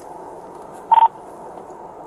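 One short buzzy burst from a police radio about a second in, over a steady hiss inside the patrol car.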